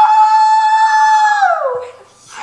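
A long, high howl: one held note that drops in pitch near the end.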